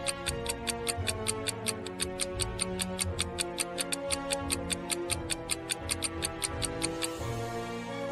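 A fast, even clock-like ticking sound effect, about six or seven ticks a second, over soft background music, marking thinking time before a riddle's answer; the ticking stops about a second before the end.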